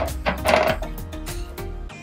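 Fluffy homemade borax-and-glue slime, mixed with shaving foam, being poked and pressed by fingertips, giving a quick run of small sticky pops and clicks. Background music plays underneath.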